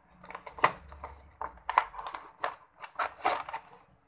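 A cardboard box being opened by hand and a clear plastic packaging tray slid out of it: irregular scraping, rustling and sharp clicks.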